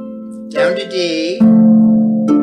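Lever harp playing a root-position block chord that rings and fades, with a brief spoken call in the middle. About one and a half seconds in, a new chord is plucked loudly and rings on.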